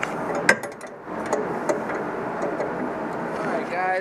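Metal handling noise and clicks from working the threaded adjuster of an Öhlins coilover with a tool, with a sharp click about half a second in, over steady background noise.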